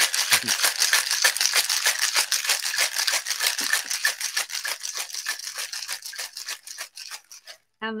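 Ice rattling inside a cocktail shaker as a drink is shaken hard: a fast, even rattle of many strokes a second that weakens and stops shortly before the end.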